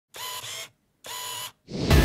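Two camera shutter-and-wind sound effects, each about half a second long, with a gap between them. Near the end a whooshing swell rises into music.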